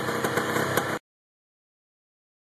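1978 Bultaco Alpina 350's single-cylinder two-stroke engine idling steadily, cut off abruptly about a second in.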